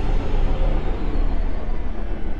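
Ominous soundtrack music over a deep, steady low rumble, its upper range fading away.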